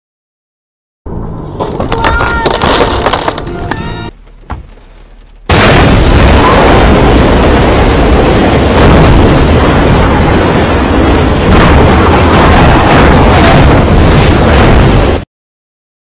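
Film action-scene soundtrack of a locomotive ploughing through street traffic. Brief voices and tones come first. From about five seconds in there is a loud, dense din of crashing mixed with music, which cuts off suddenly near the end.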